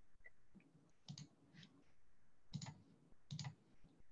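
Near silence over a video call, broken by about four faint, short clicks from a computer as a screen share is handed over and started.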